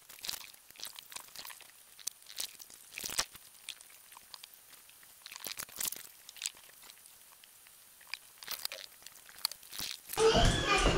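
Lidded pot boiling on a gas hob: quiet, irregular small pops and clicks from the bubbling contents and the lid.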